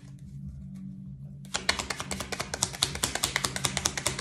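A deck of tarot cards being shuffled by hand: a few faint card clicks, then about a second and a half in a fast, dense run of crisp card flicks and clicks.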